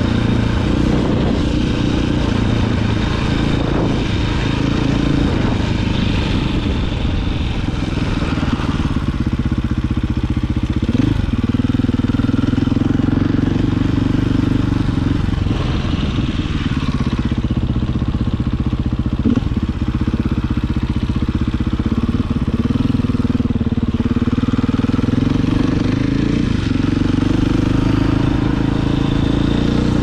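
A 450cc dirt bike's engine running while the bike is ridden. Its pitch dips and climbs again several times as the rider works the throttle and gears.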